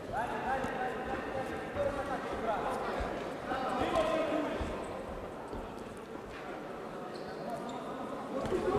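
Dull thuds of boxers' footwork and punches in a ring, under background voices calling out in a large hall.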